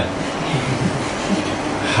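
A steady, even hiss: the background noise of the recording, with no speech, and faint low murmurs beneath it.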